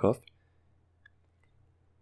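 Near silence after a spoken word ends, with two faint clicks about a second in and half a second later.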